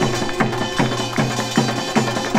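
Seated samulnori ensemble playing, with a jing (large Korean gong) struck with a padded mallet. Drum strokes keep a steady beat of about two and a half strokes a second, with metallic ringing sustained above them.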